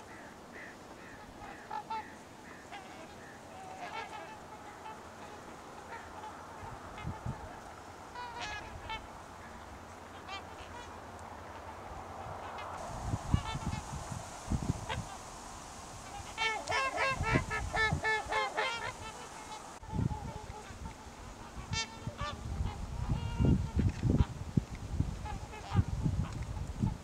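A flock of swans calling: repeated short honking calls throughout, thickening into a dense overlapping chorus about two-thirds of the way through. Loud low rumbles come and go in the second half.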